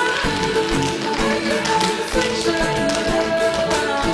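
Tap shoes striking a stage floor in quick, dense rhythms as several tap dancers dance together over music with held instrumental notes.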